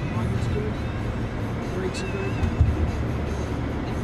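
Steady low road and engine rumble inside the cabin of a moving Honda sedan, with music playing over it.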